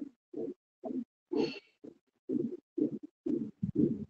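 Soundtrack of a screen-shared animated video, heard as muffled pulses about twice a second with silence between them. A brief higher-pitched sound comes about a second and a half in.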